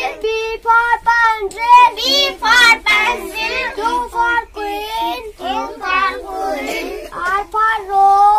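A young boy chanting the alphabet chart's letters and words in a sing-song voice.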